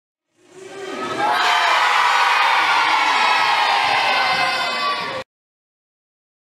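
A crowd of children shouting and cheering, fading in over about a second, then loud and steady until it cuts off abruptly near the end.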